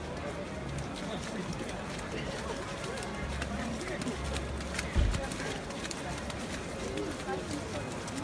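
A steady rushing noise from a powder-snow avalanche coming down the slope, under faint voices talking. One dull thump about five seconds in.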